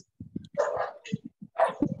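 A dog barking twice, about half a second in and again near the end.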